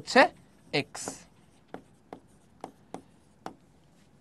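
A pen or stylus writing on an interactive display, with about five short, sharp taps of the tip on the screen in the second half.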